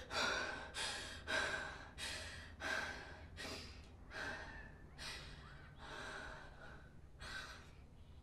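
A woman breathing hard in short, ragged gasps, about one and a half a second at first, slowing and growing fainter as she catches her breath.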